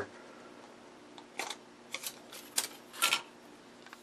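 Thin styrene plastic strip and disc being handled: a few short, faint clicks and rustles starting after about a second, the last one the loudest.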